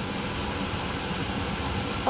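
Steady whooshing noise of a fan running, even and unchanging throughout.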